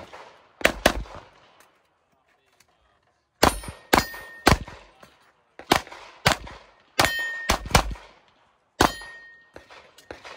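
About eleven 9mm pistol shots fired in quick pairs and short strings, with a silent gap of about two seconds after the first pair while the shooter moves. Several hits on steel targets ring out with a short metallic clang.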